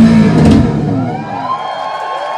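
A rock band's song ending with a loud final chord and drums that cut off about half a second in, followed by the crowd cheering with sliding high whistles.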